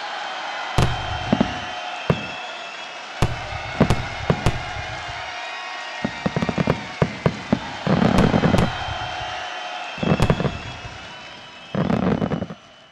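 Aerial fireworks shells bursting: single sharp bangs every second or so, a quick run of crackling pops about six seconds in, and denser, heavier bursts around eight and ten seconds and again at the end.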